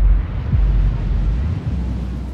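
A deep rumble with a hiss that swells upward, over a bass-heavy beat with gliding kicks; it all fades away near the end.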